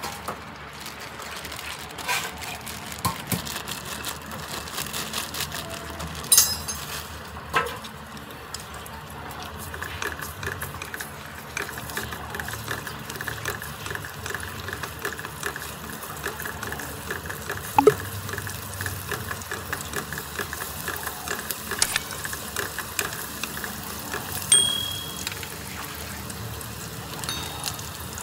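Chopped garlic frying in hot rendered pork fat in a steel wok: a steady crackling sizzle that grows stronger partway through. A few sharp clicks come from the chopsticks against the wok.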